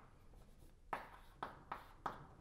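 Chalk writing on a blackboard: a quiet first second, then three short, sharp chalk strokes in quick succession.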